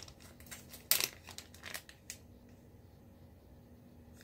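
Clear plastic bag around a wax-melt sample crinkling as it is handled, with one louder crackle about a second in; the rustling dies away after about two seconds.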